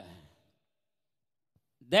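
A man speaking into a microphone trails off at the end of a phrase, then a pause of about a second and a half of near silence, and his speech starts again near the end.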